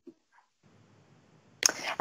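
Near silence on a webinar's call audio, with one faint brief sound just after the start; a woman's voice begins near the end.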